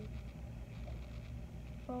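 Quiet room tone: a steady low rumble with no distinct event, broken by a short spoken "oh" at the very end.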